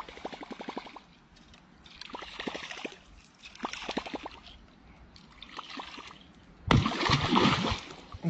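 A baitcasting fishing reel being cranked in short bursts, rapid clicking about ten ticks a second; about seven seconds in, a large hooked fish thrashes at the water's surface with loud, sudden splashing.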